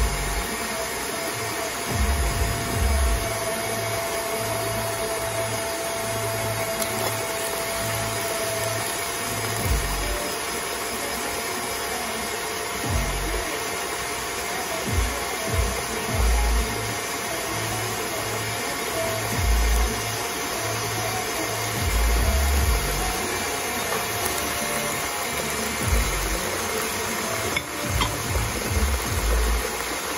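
Electric hand mixer running steadily, beating cake batter, with occasional low knocks every few seconds.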